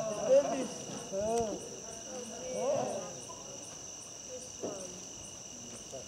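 Crickets trilling steadily in a continuous high-pitched drone. Short rising-and-falling exclamations in a person's voice break in over the first three seconds and are the loudest sounds, with one more brief call near the end.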